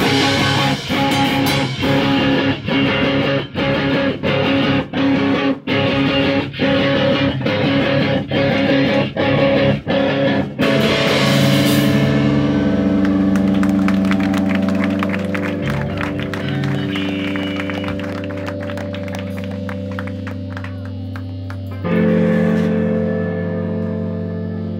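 Live rock band with distorted electric guitar and drums, playing a run of short, loud stabs broken by sharp silent gaps more than once a second. About eleven seconds in the stabs give way to distorted electric guitar chords left ringing and slowly fading, with a fresh chord struck near the end.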